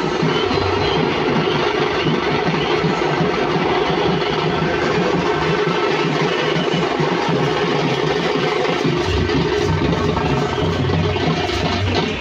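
Procession drum band of stick-beaten frame drums (tamate) and bass drums playing a steady, dense rhythm. A low hum grows louder about three-quarters of the way through.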